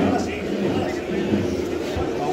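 Indistinct voices of several men talking at once close by, with no clear words.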